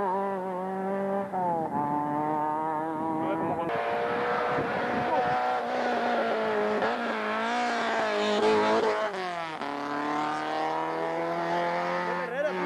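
Rally car engines revving hard, one car and then another, the note climbing and dropping sharply at each gear change: once about a second in and again near the end.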